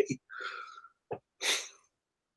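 A man's breath and mouth sounds in a pause between sentences: a soft exhale, a small click, then a short, sharp noisy breath about one and a half seconds in.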